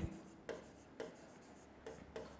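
Stylus writing on the glass screen of an interactive whiteboard: a few faint taps and short scratchy strokes as a word is written.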